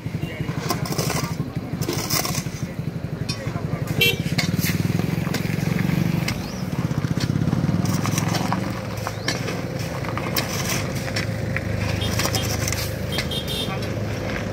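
A vehicle engine running with a steady low rumble, under people talking, with scattered scrapes and knocks of shovels working gravel on the road.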